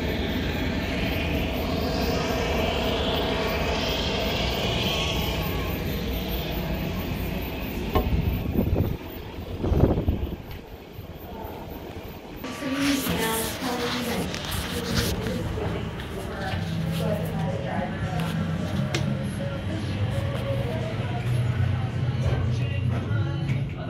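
Steady airport noise of jet aircraft, a rumble with a hiss over it, with two loud low thumps about eight and ten seconds in. After about twelve seconds the noise gives way to background music playing indoors, with a low hum under it.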